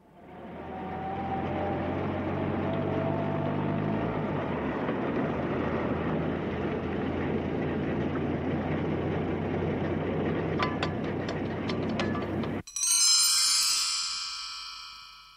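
Cartoon sound effect of the steady rumble inside a moving passenger train. A quick run of sharp ticks comes near the end, then the rumble cuts off abruptly into a bright, high sustained chord.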